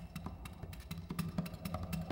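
Acoustic guitar played percussively in fingerstyle: quick taps and slaps on the guitar's body and strings over ringing low bass notes.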